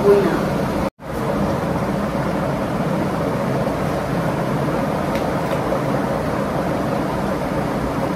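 Steady, even rushing noise of an electric fan running close to the microphone. A sudden silent dropout about a second in, where the recording cuts.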